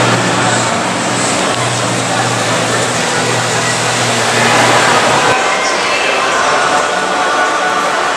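Crowd chatter and the general din of a busy exhibition hall, with a steady low hum that stops about five seconds in.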